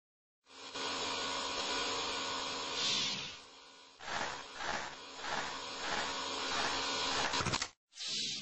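Electric vacuum pump running as it draws the air out of a wood-treating cylinder: a steady machine whir with a hum, dipping about three and a half seconds in, then coming back in a pulsing rhythm until it cuts off suddenly near the end.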